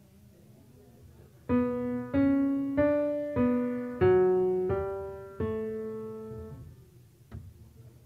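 Piano playing a short melodic phrase of seven single notes, about one and a half notes a second, each fading after it is struck, the last held longer before it dies away. A single click follows near the end.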